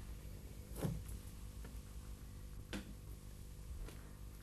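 Faint sounds of a man levering himself up out of a chair on two wooden walking sticks: two soft knocks, about a second in and near the three-second mark, over low room tone.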